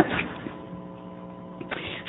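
Low, steady electrical hum made of several even tones, heard through the sound system in a gap between words.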